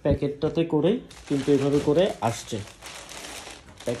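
A man talking over the crinkle of a clear plastic packaging bag being handled.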